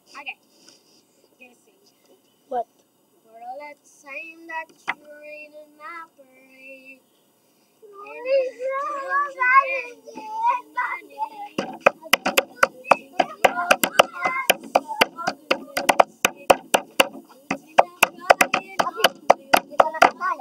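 A child singing unaccompanied, starting with short phrases and then a continuous song. About twelve seconds in, sharp hand claps join in a steady beat of about four a second while the singing carries on.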